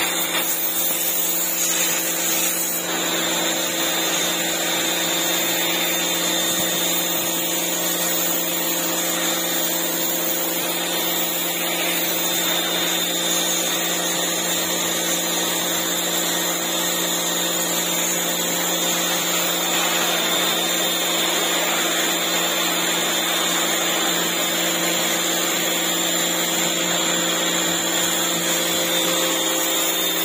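Pressure washer running steadily: a constant motor hum under the hiss of its water jet spraying slime off concrete steps.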